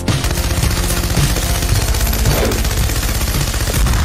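Rapid, continuous machine-gun fire mixed with intro music.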